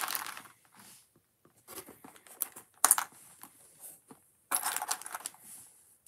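Loose plastic building-brick pieces clicking and rattling against each other as a hand rummages through a tray of them, in scattered bursts with a longer clatter about two-thirds through.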